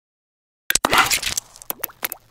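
Popping sound effects for an animated logo intro. A quick run of sharp pops and clicks starts under a second in and is densest for about half a second, followed by a few scattered pops with short rising blips.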